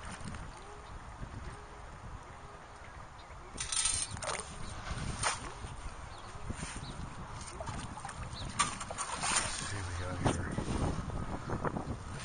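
Legs and a sand scoop sloshing and splashing through shallow water while wading, quiet at first, then louder and more frequent splashes from about four seconds in.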